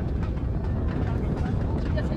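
Outdoor stadium ambience: a steady low rumble with indistinct voices in the background.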